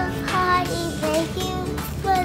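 A young girl singing a song, her held notes sliding in pitch, with music underneath.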